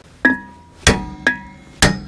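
Hammer striking the old cast-iron rear brake rotor of a 2013 Toyota Sienna to knock it off the wheel hub: four hits about half a second apart, the second and fourth the loudest, each leaving a brief metallic ring.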